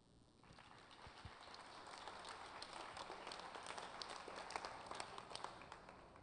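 Audience applauding, rather faint, rising about half a second in, holding, then tapering off near the end.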